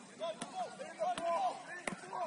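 Distant, short shouts of footballers calling across an outdoor pitch, with a few sharp knocks among them, the loudest just before the end.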